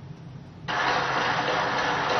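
Audience applause: a dense, even wash of clapping that starts suddenly a little under a second in.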